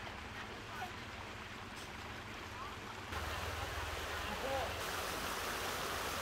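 Steady rush of flowing floodwater, louder from about three seconds in, with faint voices calling in the background.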